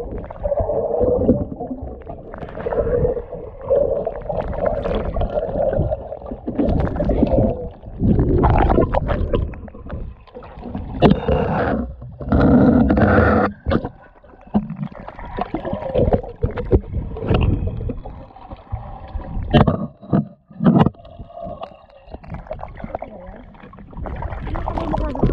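Muffled, irregular sloshing and gurgling of water, heard by a camera at or just under the water's surface, surging and dropping unevenly.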